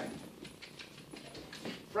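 Faint scuffing and light taps of a small dog's paws on a hard vinyl floor as it turns following a food lure.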